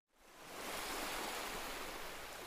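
Steady rush of ocean surf fading in just after a brief silence.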